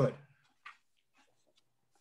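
A man's voice ending a word, then near silence, broken once by a faint click about two-thirds of a second in.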